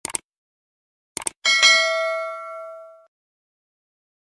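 Subscribe-button animation sound effect: short mouse clicks at the start and again just after a second in, then a notification bell ding that rings out and fades over about a second and a half.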